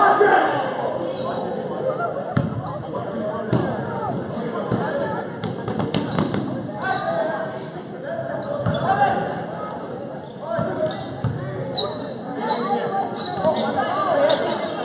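Basketball bouncing on a gym floor during live play, with sneakers squeaking near the end. Voices of players and spectators echo through the large hall.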